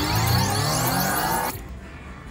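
Wheel of Fortune Gold Spin Deluxe slot machine playing its electronic anticipation sound, a cluster of rising tones while the last reel spins with two SPIN symbols already landed. The sound cuts off suddenly about one and a half seconds in as the reel stops short of the third SPIN.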